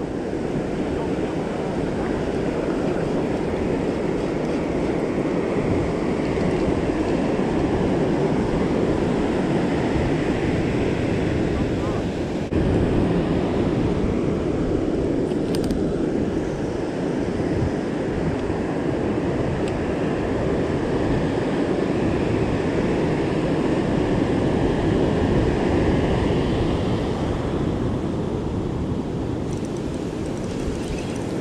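Ocean surf washing over the sand with wind buffeting the microphone: a steady rushing noise.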